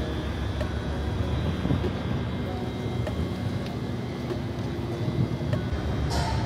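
Steady low rumble and hum from a stationary electric multiple-unit train, with a faint high steady whine above it.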